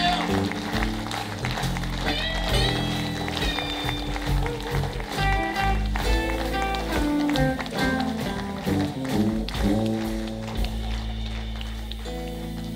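A blues band playing live: electric guitar lines bending and sliding over bass, drums and keyboard.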